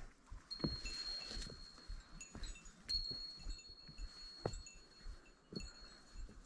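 A small metal bear bell, carried by a walking hiker, ringing faintly: three high, held rings a couple of seconds apart, with soft knocks of footfalls between.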